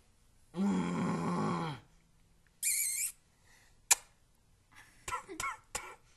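A young man's straining groan while flexing his arm, lasting about a second. A short high-pitched sound, a sharp click and a few brief vocal sounds follow later.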